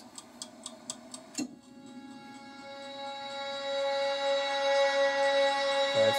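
Teaser soundtrack: a steady ticking, about four ticks a second, until about a second and a half in. Then a sustained musical chord comes in and swells steadily louder, leading into the song.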